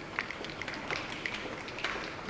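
Light, scattered hand-clapping from a small group of spectators: irregular sharp claps, about five a second.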